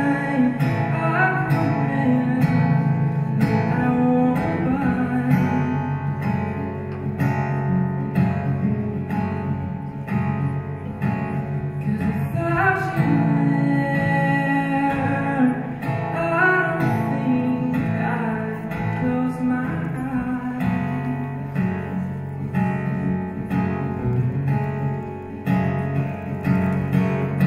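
Steel-string acoustic guitar played solo, a steady run of chords and notes, with a male voice singing over it at times.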